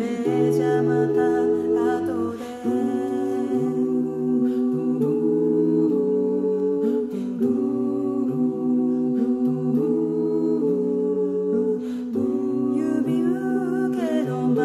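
Five-voice a cappella group singing in close harmony: held chords that change every second or so over a sung bass line.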